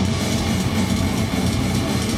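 Death metal band playing live: distorted electric guitars and bass over fast, dense drumming, loud and unbroken.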